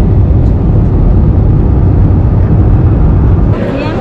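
Jet airliner cabin noise in flight: a steady, loud, low rumble of the turbofan engine and airflow heard from a window seat beside the engine. It cuts off near the end, giving way to voices.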